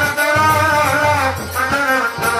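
Live Bengali jari gaan folk music: a wavering melodic line over drum beats and small percussion.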